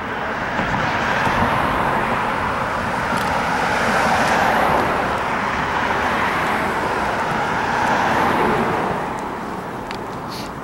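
Road traffic on a multi-lane street, cars driving past close by, the sound swelling and fading as each one goes by.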